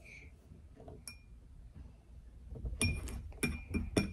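Metal spoon clinking against a drinking glass while turmeric powder is stirred into water: one ringing tap about a second in, then a quick run of clinks near the end.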